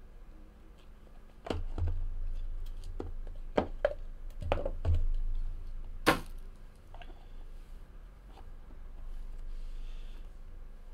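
Cardboard trading-card packs being stacked and set down on a card box, a series of light knocks and taps, the loudest about six seconds in.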